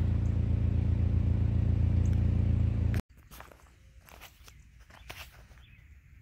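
A vehicle's engine running with a steady low hum, cut off abruptly about three seconds in. It gives way to quiet outdoor air with a few faint scattered clicks and rustles.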